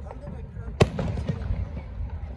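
A firework aerial shell bursting with one sharp, loud bang about a second in, followed by a couple of fainter pops, over a steady low rumble.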